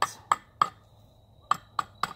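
Hatchet chopping down the length of a seasoned Osage orange axe-handle blank, roughing out its shape: three sharp strikes in quick succession, a short pause, then two more near the end.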